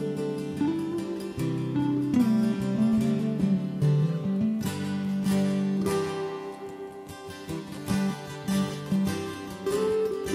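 Live guitars playing an instrumental break between sung verses: acoustic guitars strumming chords while a melody line is picked over them. The playing eases off briefly about two thirds of the way through, then picks up again.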